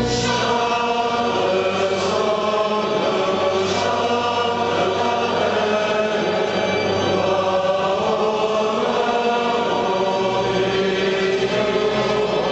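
Background music: a choir singing slow chant in long, held notes.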